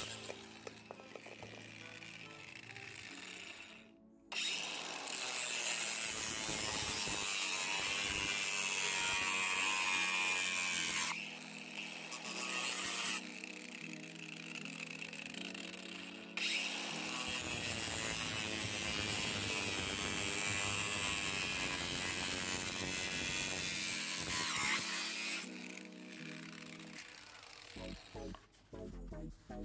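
Electric angle grinder with a thin cut-off disc running and cutting through 40 mm PVC pipe, in several stretches that start and stop abruptly.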